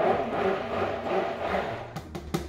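Stick blender running on low in soap batter while lye solution is poured in, its motor pitch wavering. It cuts off just before the end.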